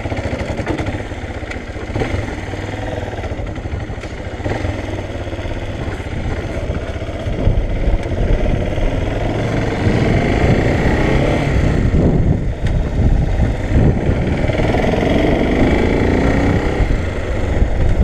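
Motorcycle engine running while the bike rides along a street, getting louder about halfway through.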